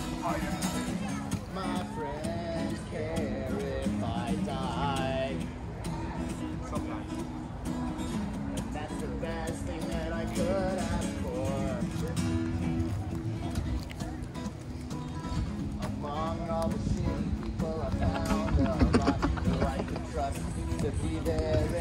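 Live guitar strummed in steady chords, with a singing voice over it that comes and goes.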